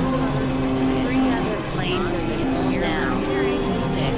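Experimental synthesizer drone music: sustained low held tones that shift pitch, with short clusters of gliding, warbling high sweeps twice in the middle.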